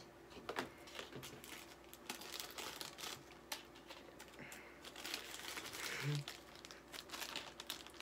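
Packaging of a single-chip challenge crinkling and crackling as it is handled and opened, a faint, irregular run of small crackles.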